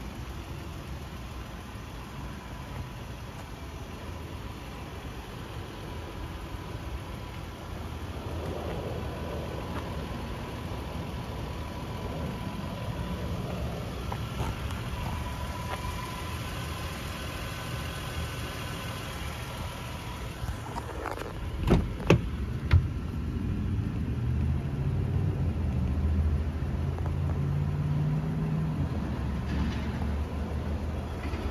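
A vehicle engine idling with a steady low hum. About 22 s in there are three sharp clicks from a car door latch as the door is opened, and after that the idle hum is a little louder.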